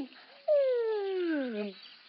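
A single sliding, whistle-like tone that falls steadily in pitch for about a second. It is a comic drop effect for the camping stove going into the backpack.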